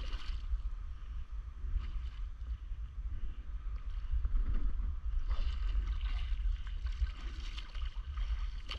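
Sea water splashing and lapping around a paddleboard, over a steady low rumble of wind on the microphone. The splashing is stronger near the start and again from about five seconds in.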